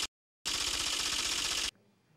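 Television graphics sound effect: a fast, dense mechanical rattle as a caption builds up on screen. It starts after a brief silence, runs for just over a second and cuts off suddenly.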